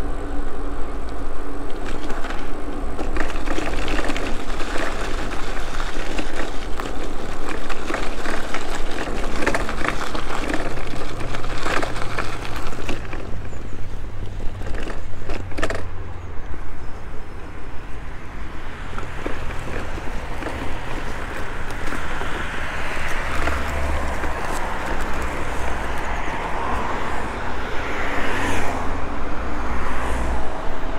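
Electric bike riding noise: tyres rolling and the frame and handlebar mounts rattling with frequent knocks over the paving, under steady wind noise on the microphone. The knocks ease off in the second half, giving way to smoother rolling and road-traffic noise.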